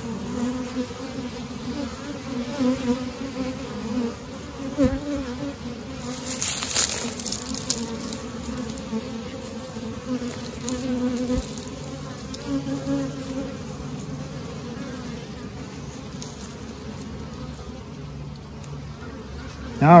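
Honeybees buzzing in a steady, wavering hum over the top bars of an open hive. A brief scrape of a metal hive tool against the wooden frames comes about six to seven seconds in.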